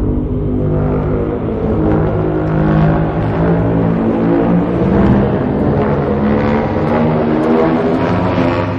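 Godzilla roar sound effect: one long, rough roar with many layered pitches over a low rumble, held for about nine seconds before fading out.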